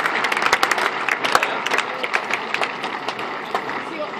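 Cricket crowd applauding the fall of a wicket: dense clapping from the stands that thins out and fades toward the end.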